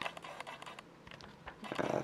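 Faint handling noise: a few light clicks and rustles, a little louder near the end.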